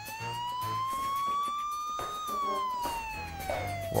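Wailing siren sound effect: one slow rise in pitch that peaks about two seconds in and then falls away, over intermittent low notes.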